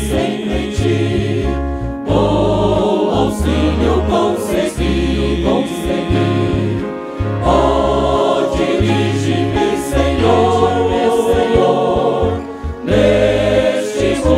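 Men's vocal group singing a gospel hymn in harmony into microphones, with a choir behind, backed by keyboard and acoustic guitar and steady deep bass notes. The singing pauses briefly between phrases about two, seven and twelve and a half seconds in.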